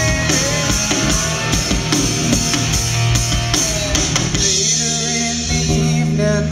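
Live rock band playing an instrumental passage between sung lines: electric guitars, bass guitar and a drum kit keeping a steady beat, settling into held low notes near the end.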